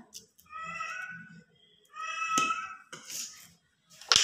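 A cat meowing twice, each call just under a second long and fairly level in pitch.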